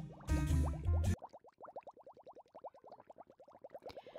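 Background music with a deep bass note stops abruptly about a second in. It is followed by a faint, rapid run of short rising blips, about a dozen a second: a cartoon-style bubbling sound effect.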